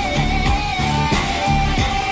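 Live rock music: an electric guitar holding one long, slightly wavering high note over a simple, steady bass-and-drum beat.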